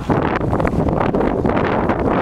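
Wind blowing across the camera's microphone, a loud, steady low rumble with no other sound standing out.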